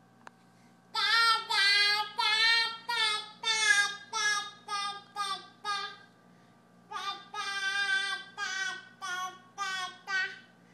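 A toddler singing high, wordless drawn-out notes in two phrases, the second beginning after a short pause about seven seconds in.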